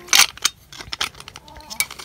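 Jar lid parts being separated by hand: a short, loud scrape near the start as the insert disc is worked loose from its screw band, then a few light clicks and taps.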